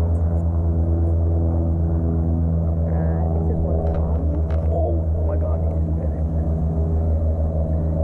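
An engine or motor running steadily at an even speed, a low hum with a slight regular pulse.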